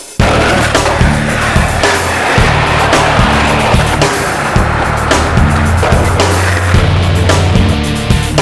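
Skateboard wheels rolling on pavement, a steady noisy rumble, under a music soundtrack with a repeating bass line.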